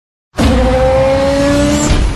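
Car sound effect: a tyre squeal with a slowly rising pitch over a heavy rumble, starting abruptly about a third of a second in.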